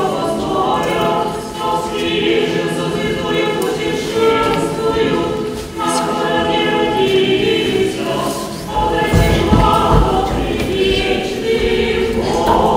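A church choir and congregation singing unaccompanied Orthodox liturgical chant, in sung phrases with brief pauses between them. A low rumble comes under the singing about nine to ten seconds in.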